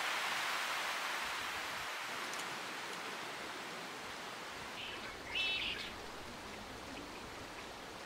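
Steady outdoor hiss of woodland ambience that slowly fades, with a short bird chirp about five seconds in.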